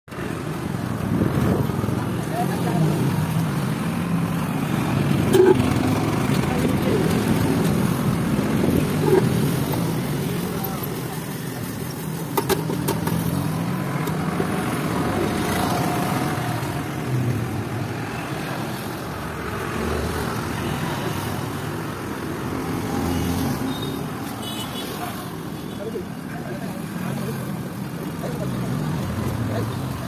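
Busy roadside ambience: steady traffic noise with indistinct voices, and a few light clicks about midway.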